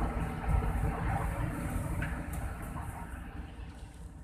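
Low engine and road rumble of a moving vehicle heard from inside the cab, with a faint hiss and a few light clicks; it fades out steadily over the last couple of seconds.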